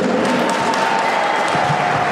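Audience applauding, a dense steady clapping, with a thin steady held tone running under it for most of the time.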